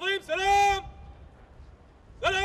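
A parade commander's shouted word of command to an honour guard: a short bark, then a longer call that rises and holds one steady pitch for about half a second.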